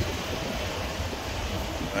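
Car engine idling with a steady low rumble, run so that the newly replaced radiator draws in coolant from the filler funnel.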